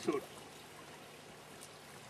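A man's voice says one word, then a pause with only a steady, faint hiss of background noise.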